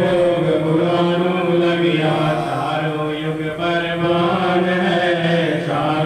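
Devotional chanting, a repeated hymn line sung without a break.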